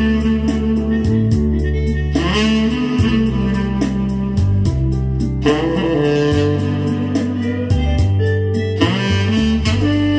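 Sky Wind tenor saxophone playing a slow soul-ballad melody in long held notes over a recorded backing track with bass and a steady beat.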